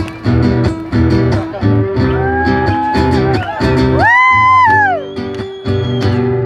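Amplified acoustic guitar strummed in a steady rhythm, playing a song's intro before the vocals come in. Midway a sustained pitched note rises, holds and falls while the low chords briefly drop out.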